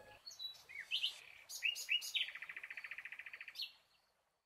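Bird chirping: a few short chirps rising in pitch, then a rapid trill of about a dozen notes a second that stops shortly before the end.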